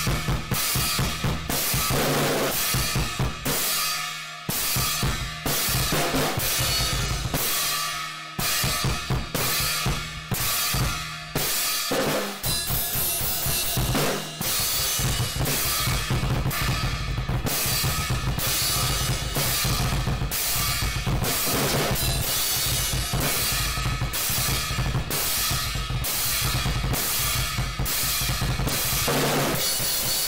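Acoustic drum kit played fast and hard in a metalcore song: rapid bass drum and snare under crash cymbals struck in an even pulse.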